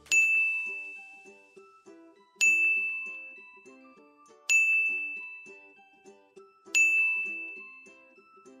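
A bright chime sound effect dinging four times, about two seconds apart, each strike ringing out and fading, over soft background music of short, bouncy notes. Each ding is a cue to read the next highlighted syllable aloud.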